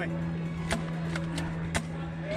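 A few sharp clicks scattered over about two seconds, over a steady low hum.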